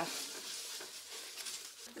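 Quiet room tone in a small room: a faint, even background hiss with no distinct sound standing out.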